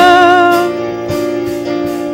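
Live gospel music: a woman's held sung note ends under a second in, and the electronic keyboard carries on with sustained chords and a light, steady beat.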